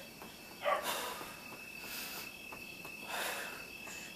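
A woman breathing hard through an abdominal exercise, three audible breaths about a second apart, over a steady high-pitched whine.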